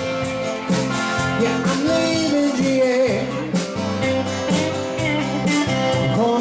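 Live country band playing: a man singing over acoustic and electric guitars, with drums keeping a steady beat.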